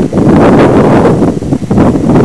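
Loud wind buffeting the camcorder microphone, a rough, gusting rumble that swells and dips.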